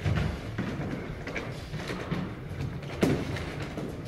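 Two people sparring in boxing gloves: thuds of gloved punches and feet moving on a wooden floor, with sharp hits at the start and just after half a second, and the loudest about three seconds in.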